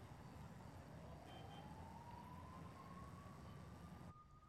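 Faint distant siren, one slowly rising wail that levels off near the end, over a low steady rumble of city ambience.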